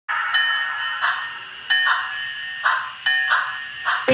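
High, bell-like chime tones struck five times in a repeating long-short rhythm, each strike ringing and then fading.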